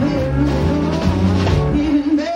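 Live blues-rock band playing: two electric guitars over drums, with strong, steady low notes underneath.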